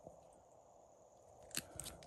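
Near silence, then a few faint clicks and rustles near the end as a hard plastic card case is handled and turned over in the fingers.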